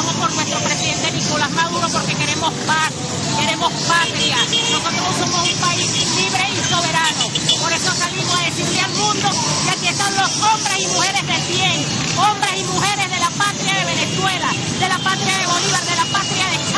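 A woman speaking loudly into a reporter's microphone at a street march, over the steady running of many motorcycle engines and crowd noise.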